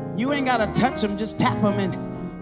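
A woman singing a gospel run into a microphone, her voice bending and sliding through the notes, over a sustained keyboard accompaniment.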